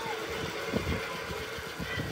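Animated-film soundtrack playing through a TV's speakers: an uneven low rumble, with a brief cry right at the start.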